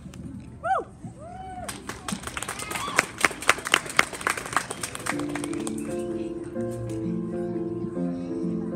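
A brief cheer from the audience, then a few seconds of scattered clapping; about five seconds in, a recorded piano accompaniment starts playing through the PA.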